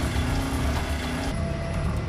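A motorcycle engine running as the bike pulls away, with a steady low rumble under dramatic background music.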